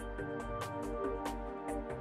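Relaxing background music with a steady beat of light percussion over sustained melodic tones and a bass line.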